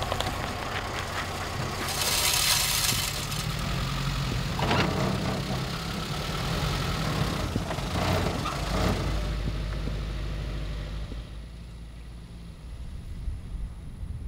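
A small 4x4's engine runs with a steady low rumble, with a brief rushing noise about two seconds in. The engine sound drops away near the end.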